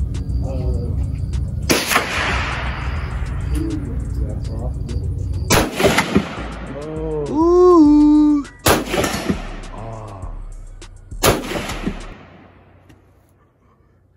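AR-style rifle fired four times, a few seconds apart, each shot sharp with a short echo trailing off. Background music plays underneath and drops away near the end.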